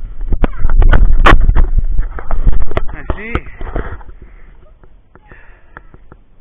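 Inline skate wheels rolling over rough asphalt with wind buffeting the microphone, loud and rumbling, with scattered sharp clacks. It dies away about four seconds in.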